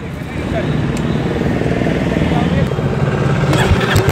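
Royal Enfield Meteor 350's single-cylinder engine running, heard close at the exhaust, its level building steadily. Near the end it settles into a slower, even idle beat.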